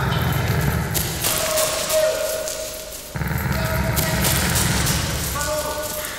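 Battle-scene sound effects: a dense low rumble of rapid thuds that breaks off suddenly about three seconds in and starts again, with short held cries over it.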